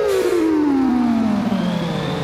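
A long sliding tone with overtones, falling slowly and steadily in pitch, used as a comic sound effect in a film soundtrack.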